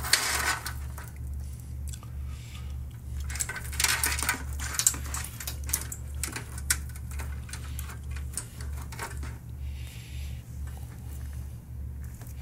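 Sleeved power-supply cables and their plastic connectors being handled and shifted inside a metal PC case: rustling with small clicks and clinks, busiest near the start and about four seconds in, over a steady low hum.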